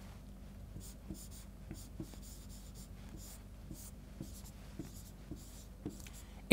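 Chalk writing on a chalkboard: faint, irregular taps and short scratching strokes of the chalk against the board.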